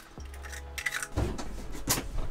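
Eggs tapped and cracked against the rim of a glass mixing bowl, with a few sharp clinks of glass; the loudest come about a second in and near the end.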